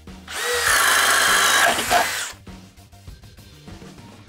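A DeWalt cordless drill boring a 1-inch hole with a Speed Demon bit. It runs loud for about two seconds and then stops, over soft background music.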